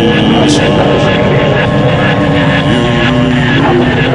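Loud, dense wall of distorted noise from an experimental hardcore noise recording, with droning held pitches that step to new notes about two-thirds of the way through and a brief high swoosh about half a second in.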